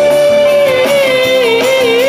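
Live pop-soul band over the PA: the female lead singer holds one long high note over guitars, keyboards and drums, the note slipping a little lower and wavering towards the end.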